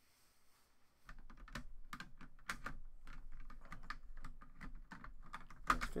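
Typing on a computer keyboard: a quick, irregular run of key clicks that starts about a second in.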